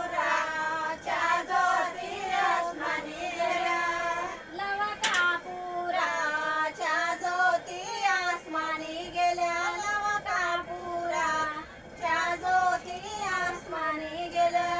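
Women singing an ovi, the traditional Marathi grinding song, together at a stone hand mill, in long held, wavering phrases. A single sharp click sounds about five seconds in.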